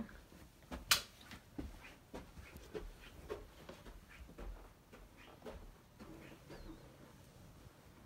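A lamp's twist switch clicks off sharply about a second in. Soft, irregular footsteps and rustling on carpet follow, with a faint brief whine near the end.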